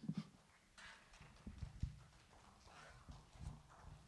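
Faint scattered soft knocks and light rustling: quiet handling and movement noise in a hushed room.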